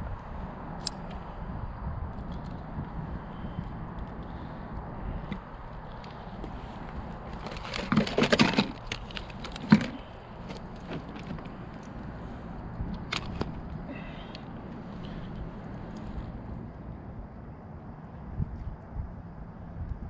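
Handling noises on a kayak as a landed flounder is worked out of a rubber landing net: rustling and small knocks over a steady low rumble, a loud scuffle about eight seconds in, and a sharp click just before ten seconds.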